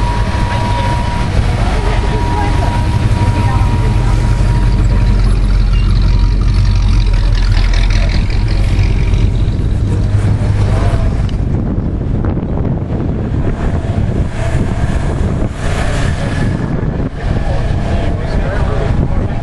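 A vehicle engine running with a steady low rumble, strongest for the first two-thirds and then easing off, under the chatter of people around it.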